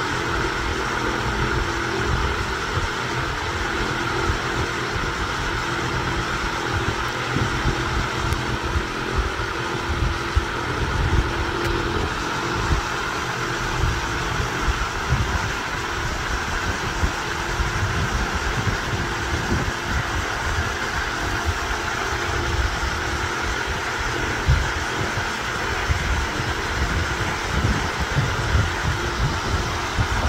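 A steady mechanical drone, like a motor running, with an irregular low rumble underneath.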